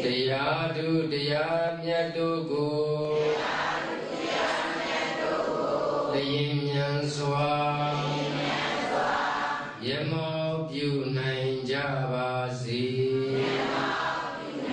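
A Buddhist monk chanting through a microphone in a single male voice. He holds long, drawn-out sung tones in phrases of a few seconds each, with brief pauses for breath between them.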